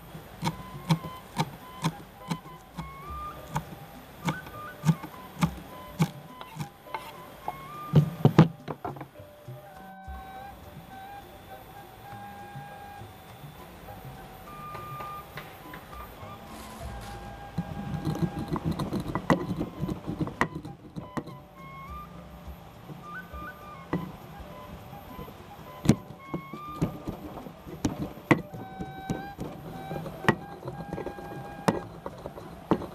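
A kitchen knife chopping fresh green herbs on a wooden cutting board in quick, sharp taps, then a rougher stretch of peppercorns being crushed in a stone mortar about two-thirds of the way through. Soft background music with a simple melody runs under it.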